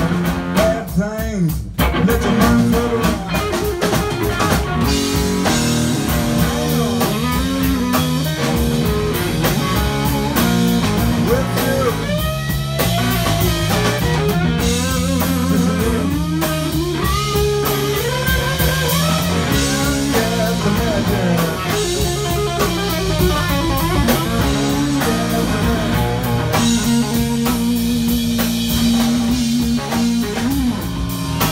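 Live blues-rock band playing an instrumental passage: an electric guitar lead with bent notes, over bass guitar and a drum kit keeping a steady beat.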